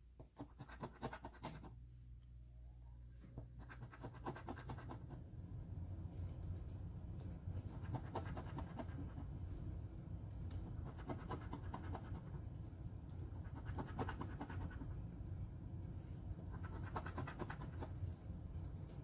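A coin scratching the coating off a paper scratch-off lottery ticket, in repeated bursts of quick strokes with short pauses between them.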